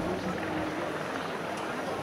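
Helicopter flying overhead at a distance, its steady rotor and engine sound heard under the murmur of people talking.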